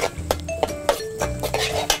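Background music with held notes over short bass notes, cut through by sharp percussive clicks.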